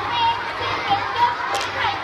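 A crowd of children talking and calling out at once, many high voices overlapping, with one brief sharp sound about one and a half seconds in.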